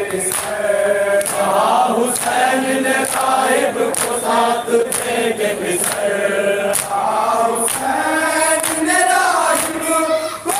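Men's voices chanting a Shia Muharram noha (lament) together in a steady sung rhythm. Sharp hand slaps of matam (chest-beating) mark the beat, a little more than once a second.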